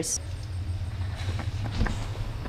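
Steady low hum of room noise, with a few faint knocks in the second half.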